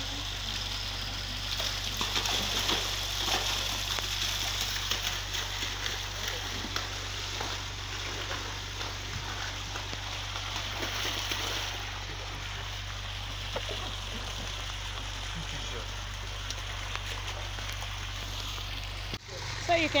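Water running and splashing steadily into a concrete fish pond from a PVC inflow pipe, with water and catfish being tipped in from a plastic basin. There is an abrupt cut near the end.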